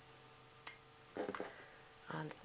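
Faint clicks and a brief rattle about a second in, from a pastel stick being picked out of a box of pastels, over a low steady hum.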